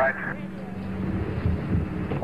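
Steady low hum with hiss on an old broadcast soundtrack, in a gap between the launch commentator's words.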